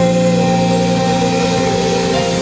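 Live worship band holding a sustained chord on keyboard and bass guitar. A new chord with a low bass note comes in at the start and is held steady.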